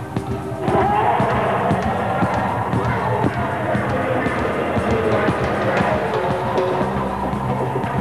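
Live rock band music with drums and timbales, dense and loud, with voices over it. It gets louder and fuller about a second in.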